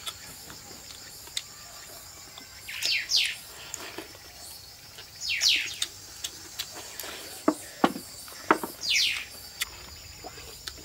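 A bird repeating a short, high, falling double call every two to three seconds over a steady high insect drone. A few sharp clicks come near the end.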